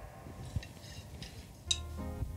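Quiet room tone at a drum kit just after the playing stops, with a faint tick about half a second in and a sharper click with a short metallic ring near the end, from the drummer's sticks and hand touching the kit.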